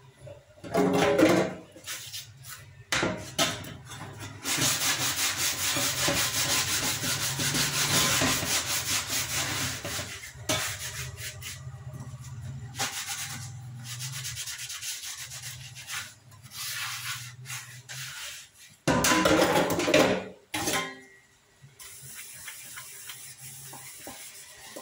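A scrubber rubbing hard on a plastic chopping board, a fast run of rasping strokes for several seconds that then goes on more lightly. There are short louder noisy bursts about a second in and again near the end.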